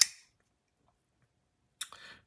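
Near quiet, then a single sharp click near the end as a bearing-pivot folding knife's blade snaps open.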